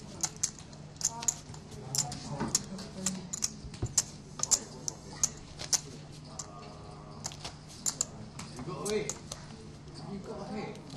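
Poker chips clicking as players finger and shuffle their chip stacks: a quick, irregular run of sharp clacks, several a second, with murmured talk in the background.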